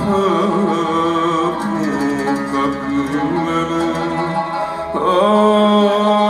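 Arabic orchestral music: plucked and bowed strings accompanying a singer's sustained, ornamented melody, swelling louder about five seconds in.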